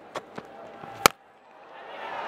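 Cricket bat striking a short-pitched ball on a pull shot: one sharp, loud crack about a second in, after a few fainter knocks. Crowd noise swells after the shot.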